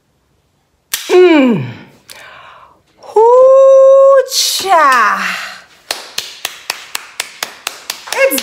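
A woman's cries: an exclamation falling in pitch, then a long, high held "ooh" and another falling cry. Then rapid hand clapping, about four claps a second, over the last two seconds.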